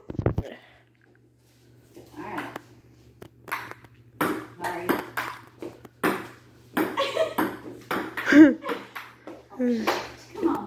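Table tennis rally: a celluloid ball clicking off paddles and bouncing on the table, about two sharp hits a second, starting about two seconds in.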